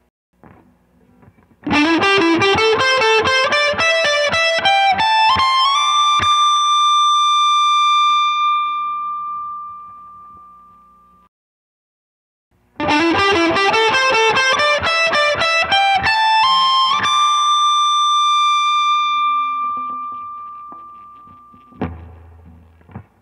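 Electric guitar through a distorted amp playing a fast run of single notes that climbs up the neck to a high note, which is held and slowly fades. The same phrase is played twice, the second time starting about halfway through, after a short silence.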